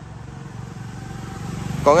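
A motorcycle approaching along the road, its engine hum growing steadily louder.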